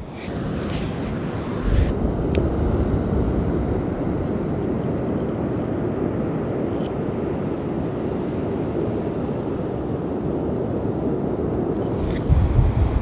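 Steady outdoor beach ambience: wind on the microphone over the wash of surf.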